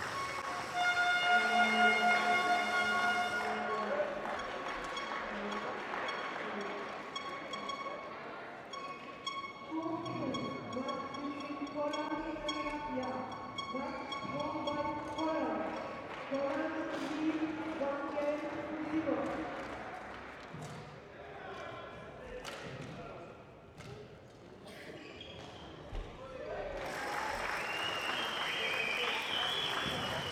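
Sports-hall ambience: a steady held tone for the first few seconds, then indistinct talking with echo, and a few sharp knocks near the end.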